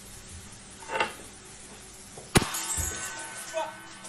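A wine glass shattering suddenly about two and a half seconds in: one sharp crack followed by about a second of high tinkling fragments, over quiet background music.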